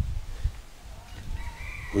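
A rooster crowing faintly, one long call that begins past the middle and runs on, with a soft low bump about half a second in.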